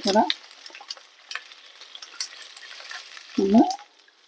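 Water poured into a hot frying pan just used for frying cashews and raisins, sizzling faintly with scattered crackles.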